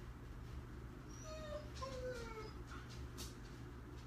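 Two faint, short animal calls about a second in, the second falling in pitch, over a low steady hum.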